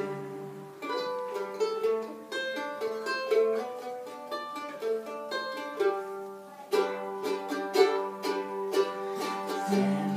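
Mandolin and acoustic guitar playing an instrumental break between sung verses of a folk song: single picked notes over strummed chords, growing busier about seven seconds in.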